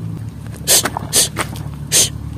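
Three sharp crunches on loose, dry shell and coral rubble, about half a second apart, over a steady low hum.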